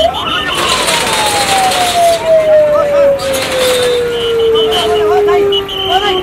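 A siren rises briefly, then winds slowly down in pitch as one long falling wail that ends near the close, over the talk of a crowd.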